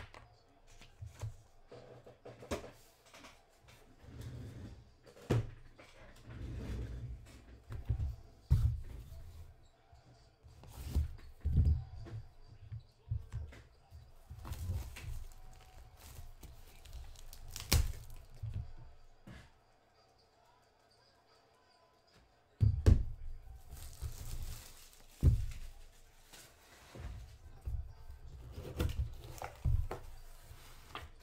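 Hands handling a cardboard box and plastic packaging: rustling and crinkling with many knocks and thumps, and a short quiet pause about two-thirds of the way through.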